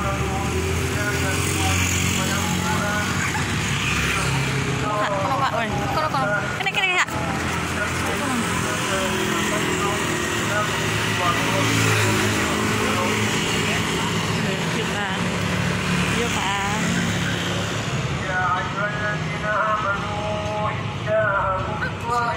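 Engines of approaching vehicles running steadily, with people's voices talking over them and a brief knock about seven seconds in.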